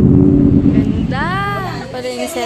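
A car engine running close by, loud and steady, easing off after about a second. A high voice then gives one drawn-out exclamation that rises and falls in pitch.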